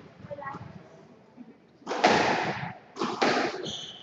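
Squash ball struck by racket and hitting the court walls: two loud impacts about a second apart, each ringing out in the court.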